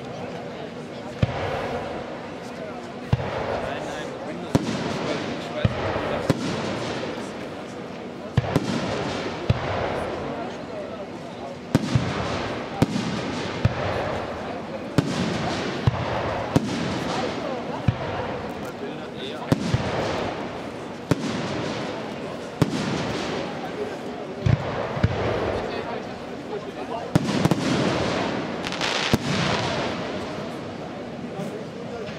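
Aerial firework shells bursting one after another, a sharp bang every one to two seconds, over a continuous noisy wash from the ongoing display.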